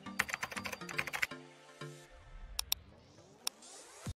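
A short intro jingle: a few musical notes with a quick run of computer-keyboard typing clicks in the first second or so, then a rising sweep near the end.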